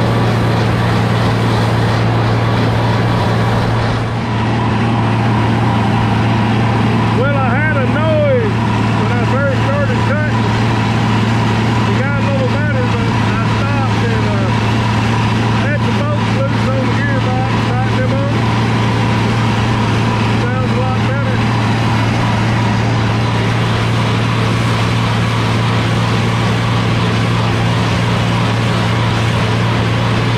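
Tractor engine running steadily under load, driving a disc mower conditioner as it cuts hay, with a constant deep drone. Between about 7 and 21 seconds a string of short, high rising-and-falling squeaks or chirps sounds over it.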